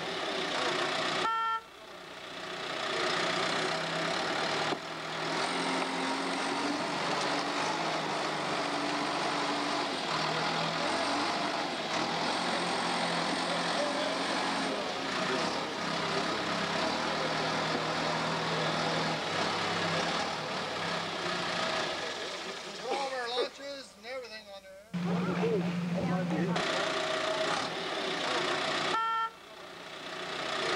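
John Deere 550G crawler dozer's diesel engine running as the machine works, pushing dirt and brush with its blade. The sound drops out briefly a few times where the recording cuts.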